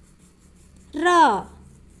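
Speech only: a single drawn-out spoken syllable, the Hindi letter "ra", about a second in, falling in pitch, over a faint low hum.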